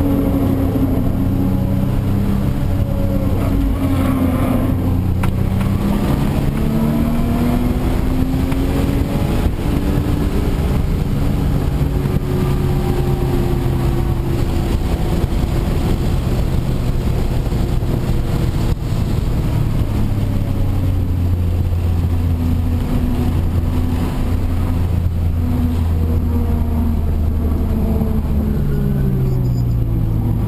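Audi B5 S4's twin-turbo V6 heard from inside the cabin while lapping a race track, the engine note repeatedly rising under acceleration and falling as the car slows, over steady road and tyre noise.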